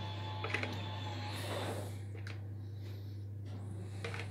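Quiet kitchen with a steady low hum. Beetroot sauce is poured and scraped from a plastic bowl onto sliced cake, giving a few faint clicks and a brief soft rush about a second in.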